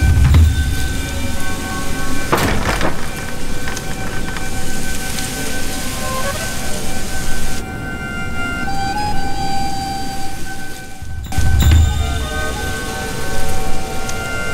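Film background score: sustained held tones over a hissing, rumbling texture, with a deep boom at the start and another near the end.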